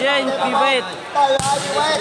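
A volleyball struck once, a single sharp smack about one and a half seconds in, under continuous commentary.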